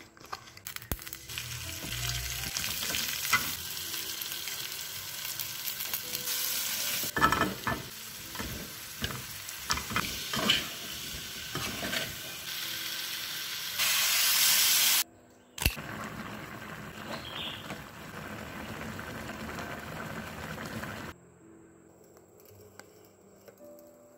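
Stingray pieces with spice paste, onion and lemongrass sizzling as they are stir-fried in a wok, with frequent clicks and scrapes of stirring. The sizzle is loudest just before it cuts out briefly about two-thirds of the way in, then stops a few seconds before the end, leaving faint music.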